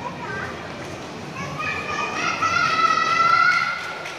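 A child's voice holding one long, high-pitched call that rises slightly in pitch, over the chatter of a crowd of shoppers.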